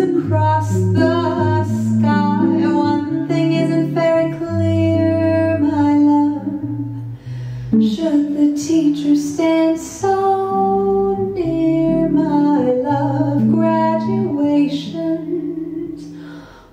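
Live jazz: a woman singing slow, drawn-out lines into a microphone, accompanied by chords on a hollow-body archtop jazz guitar.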